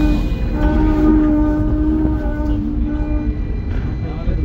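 Hong Kong tram running, with a low rumble throughout and a steady, horn-like tone held for about three and a half seconds that stops shortly before the end.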